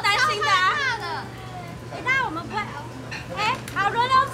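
Young women's high-pitched voices talking and exclaiming excitedly, quieter for a moment about a second in, over a steady low hum.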